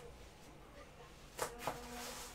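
Faint steady buzzing hum, with two short soft noises about a second and a half in.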